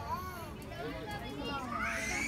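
Children's voices and the chatter of people at a zoo exhibit, with several voices overlapping. Near the end a child's voice rises into a high-pitched call.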